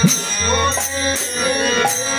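Bengali devotional kirtan: a harmonium holds chords under voices singing, small brass hand cymbals (kartal) strike a steady beat, and a barrel-shaped khol drum plays low strokes.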